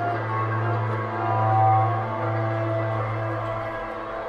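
Slow ambient music from cello, double bass and live electronics: a low held drone shifts to a new note at the start and swells to its loudest about one and a half seconds in, with steady higher tones layered above it.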